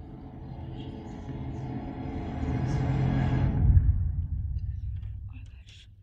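Film score swelling: layered sustained orchestral tones over a deep rumble build to a loud low hit about four seconds in, then fade out toward the end as the scene closes.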